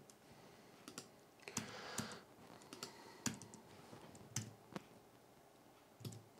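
A few faint, irregular computer keyboard keystrokes while code is edited, about seven separate clicks spread over the first five seconds, then a quiet stretch near the end.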